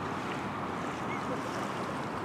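Steady wind blowing across the microphone: an even rushing noise with no distinct events.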